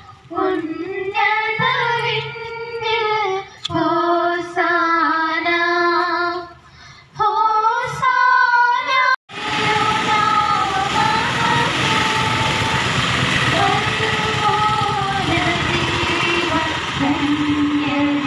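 Women and children singing a hymn together in short sung phrases. About nine seconds in the singing cuts off abruptly, then carries on over a steady rushing background noise.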